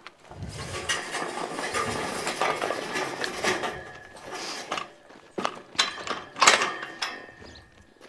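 Rattling and metallic clinking of horse tack being handled close to the microphone, with a few sharp knocks in the second half.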